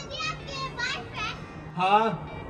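High-pitched, child-like voices making about five short calls with rising and falling pitch, the loudest near the end, over a faint low steady hum.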